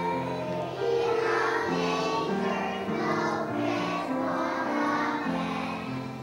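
Preschool children singing together as a group, with piano accompaniment, a steady run of held notes stepping from one to the next.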